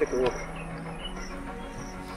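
Crickets chirping in short, high, evenly spaced chirps, with a brief voiced sound at the very start.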